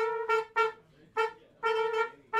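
Unaccompanied jazz trumpet playing short, detached notes repeated on one pitch in a rhythmic figure, with brief silences between them.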